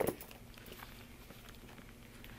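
Quiet handling noise of a leather handbag being held open: one short rustle or tap right at the start, then faint soft rustles.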